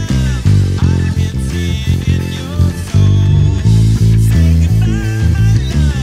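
Electric bass guitar finger-plucked in a busy line of short, quick notes, played along with a rock band recording. Guitar lines bend and glide above it, with no singing.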